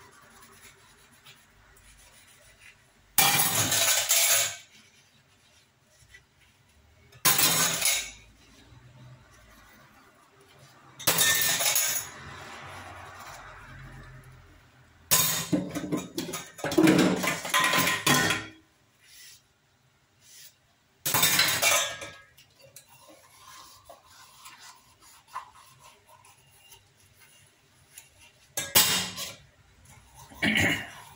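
Stainless steel utensils clinking and clattering against each other and the steel sink while being scrubbed and handled, in short bursts every few seconds, the longest lasting a few seconds midway.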